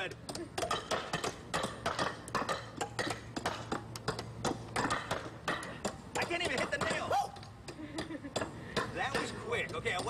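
Hammers driving nails into wooden boards: fast, irregular strikes, several a second, from two people hammering at once.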